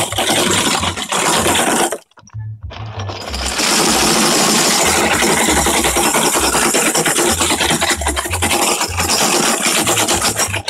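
Loud background music with a stepping bass line, cutting out briefly about two seconds in before coming back.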